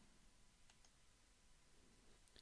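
Near silence: room tone, with two very faint clicks about a third of the way in.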